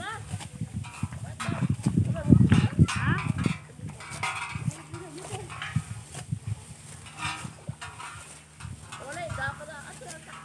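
Indistinct voices of several people talking as they harvest rice by hand, over the rustle and cutting of dry rice stalks. The voices are busiest and loudest a second or two in.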